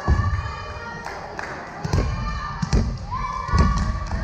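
A volleyball bounced on a hardwood gym floor, about four dull thuds at uneven intervals, the hall adding a slight echo. Girls' voices call out between the thuds.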